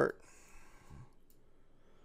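A few faint computer mouse clicks in a quiet small room, just after a man's voice trails off.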